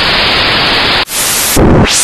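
Intro sound-design effects: a loud burst of static-like white noise that cuts off abruptly about a second in, followed by a second noise burst and a strong low hit with a rising sweep near the end.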